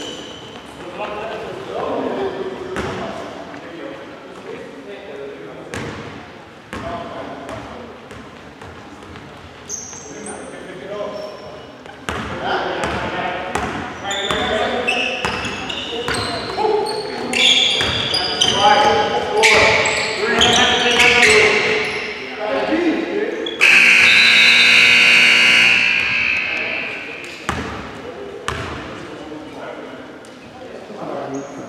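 Basketball being dribbled on a hardwood gym floor, with sneakers squeaking and players calling out in a large echoing hall. About 24 s in, a loud steady tone sounds for about three seconds.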